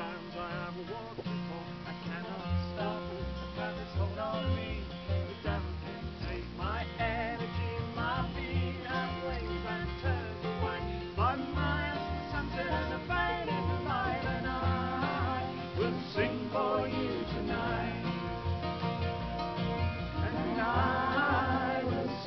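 Acoustic folk band playing: strummed acoustic guitars and mandolin over a plucked double bass line, with fiddle lines rising in the later part. It is an instrumental passage of the song, without sung words.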